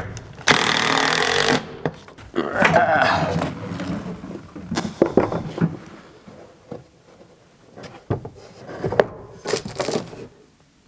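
Cordless drill-driver running in two bursts of about a second each, driving screws into a wooden ledger board on a plywood wall, followed by a few scattered knocks and clunks.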